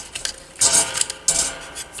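A screwdriver backing a small mounting screw out of a vintage radio's metal chassis, with metal grinding and clicking in two short bursts about two-thirds of a second apart.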